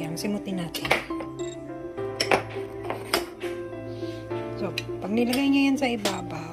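Background music, with several sharp clinks of a metal spoon against a cooking pot and bowl as chili paste is spooned in.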